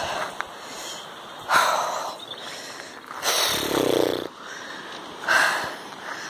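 A person breathing hard while climbing a steep uphill path: four heavy breaths about a second and a half apart, the longest one near the middle.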